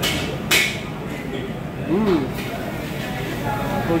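Restaurant background din of voices and general noise, with a sharp clatter about half a second in and a short rising-then-falling voiced sound near two seconds.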